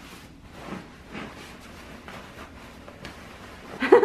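Soft rustling and swishing of fabric as a pillow insert is pushed and stuffed into a tight faux-fur pillow cover, in several separate strokes.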